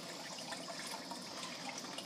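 Turtle-tank filter running: a steady, quiet trickle of falling water, with a few faint ticks.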